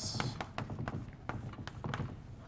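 Chalk writing on a blackboard: a quick, irregular run of small taps and short scratches as letters are written.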